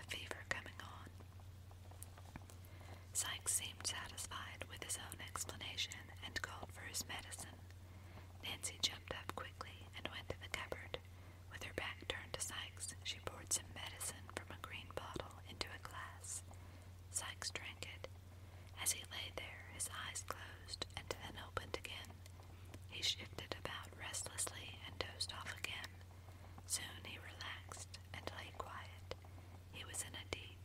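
A person reading aloud in a whisper, in short phrases with brief pauses, over a steady low hum.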